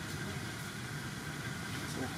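A steady low rumble of background noise, with a few faint clicks.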